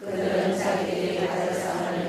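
A congregation reading a Bible passage aloud in unison in Korean: many voices running together on one steady, chant-like pitch. After a brief pause at the very start, a new phrase begins and carries on without a break.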